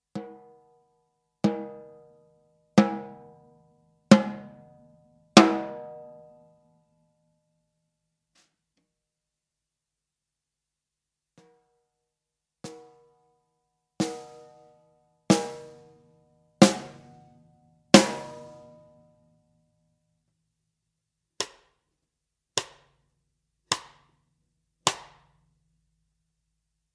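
Zebra Drums free-floating snare drum with a coated head struck with a stick in single strokes about 1.3 s apart, each ringing out briefly. There are two runs of five strokes, each run growing louder stroke by stroke, then four shorter, drier hits near the end.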